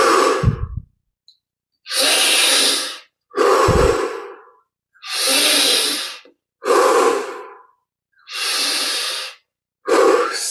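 A man's deep, forceful breaths through the open mouth, about six loud rushes of air of roughly a second each with short pauses between: a yogic breathing exercise pushed to its maximum depth and intensity.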